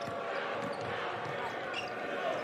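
Steady arena crowd noise during live basketball play, with a basketball being dribbled on the hardwood court.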